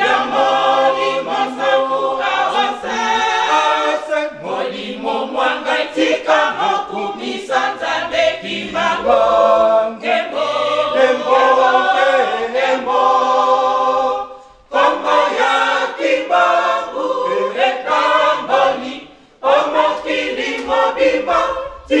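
Church choir of women and men singing a hymn together, the voices breaking off briefly twice in the second half.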